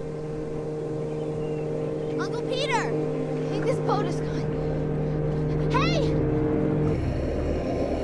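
Boat engine running with a steady, even hum. About seven seconds in it gives way to a muffled underwater rumble.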